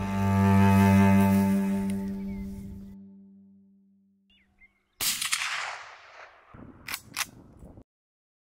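A held low chord of cello and double bass fades out over the first three seconds. About five seconds in comes a single shot from a suppressed .30-06 hunting rifle, its report dying away over about a second and a half, followed by two sharp clicks near the end.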